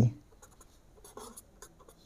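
A marker pen writing on paper: faint, short scratching strokes in the second half.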